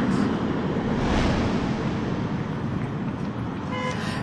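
Street traffic noise: a passing vehicle swells about a second in and slowly fades away over a steady urban background hum.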